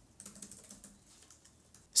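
Computer keyboard typing: a quick run of light key clicks that stops a little before the end.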